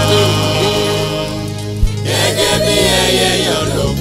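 Nigerian gospel music sung in Yoruba: voices sing over sustained bass notes, with a single sharp thump a little under two seconds in.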